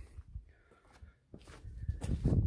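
Faint handling sounds of someone moving about at a vehicle's open door: a soft knock, a pause, then low shuffling footsteps near the end.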